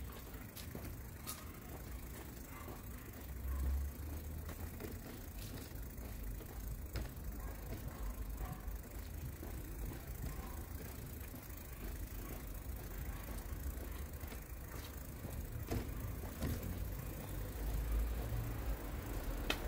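Outdoor street ambience: a steady low rumble of distant road traffic, swelling briefly about three and a half seconds in, with a few faint ticks.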